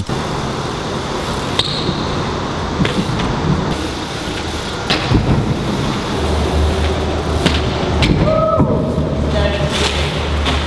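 BMX bike tyres rolling over a concrete and paver floor, with several sharp knocks as the bike is handled and lands. A steady low hum joins about halfway through.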